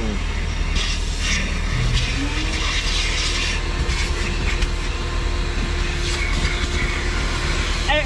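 Coin-operated car-wash vacuum running, its nozzle sucking at a car seat, with a steady hum and a tone that rises slightly and holds from about two seconds in, plus patches of hissing suction around one and three seconds in. The popcorn on the seat is too big to go in the vacuum.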